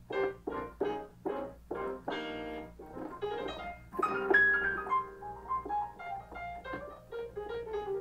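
Ravenscroft 275 software grand piano played live from a MIDI keyboard controller over Bluetooth MIDI. It starts with short repeated chords at about three a second and a held chord near the two-second mark. From about halfway it moves into a melody over sustained lower notes.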